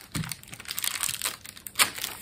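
Scraps of painted paper rustling and crackling as they are handled and pressed down onto a page, with a louder crackle near the end.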